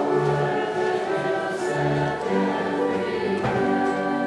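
Church organ playing slow, steady sustained chords that change about once a second.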